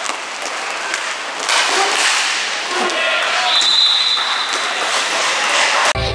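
Inline hockey play: skate wheels rolling on the plastic rink floor, sticks knocking, and players' voices, with a short high steady tone about halfway through.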